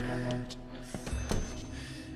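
Tense drama-score background music with sustained low notes, and a few short clicks about halfway through.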